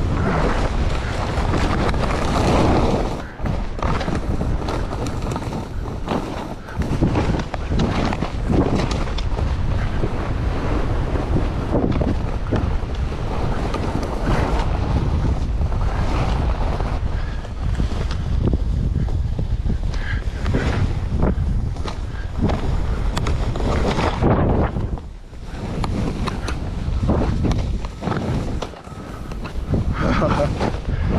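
Wind rushing over the microphone of a skier's camera during a fast downhill run, mixed with skis hissing and scraping through snow. The rush steadies and dips briefly a few times, with the turns.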